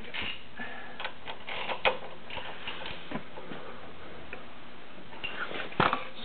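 Scattered light metallic clicks and ticks, with a few louder ones about two seconds in and near the end, as a Mazda MZR 2.3L DISI engine with its timing cover off is turned over by hand to check the timing chain tension.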